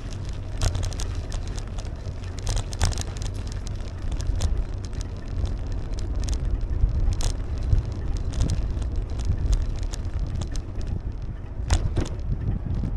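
Steady wind noise on the microphone of a moving bicycle, with irregular clicks and rattles as the bike rolls over cracked alley asphalt.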